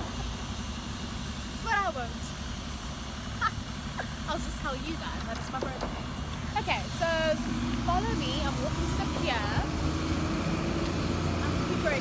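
Engine of an open-top double-decker tour bus running in the street below, a steady low rumble that gains a steadier hum about seven seconds in, with scattered voices over it.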